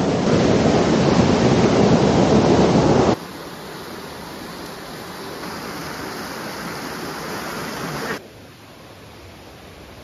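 Steady rush of a small waterfall pouring into a rock pool, loud for about three seconds, then cut abruptly to the quieter, steady rush of a rocky stream, which drops lower again about eight seconds in.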